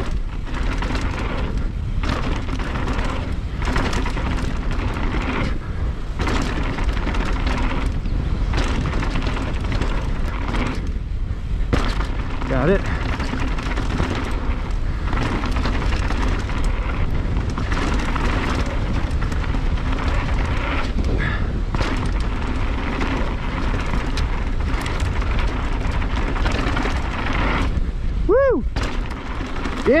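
Polygon Siskiu N9 full-suspension mountain bike descending a dirt trail at speed: wind buffeting the camera microphone over tyre noise on dirt, with frequent short knocks and rattles from the bike over bumps and jumps. A short whoop-like call rises and falls twice, once near the middle and once near the end.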